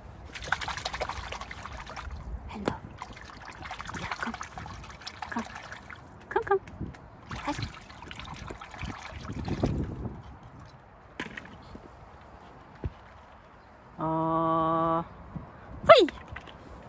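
Water sloshing and trickling in a small paddling pool full of plastic balls, in several stretches over the first ten seconds. Near the end comes a single steady buzzy tone about a second long, louder than the water.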